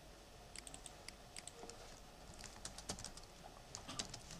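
Faint typing on a computer keyboard: irregular key clicks, sparse at first and coming faster in the second half.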